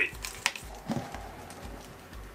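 A few light clicks and a soft knock from a rubber half-face respirator being handled and pulled on.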